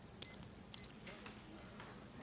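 Two short, high electronic beeps about half a second apart from a digital timer, the countdown being started for 30 seconds of debate prep time.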